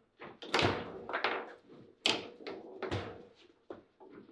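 Table football in play: the ball and the players' rods and figures knock against each other and the table walls, a string of sharp knocks about two a second, each with a short ring.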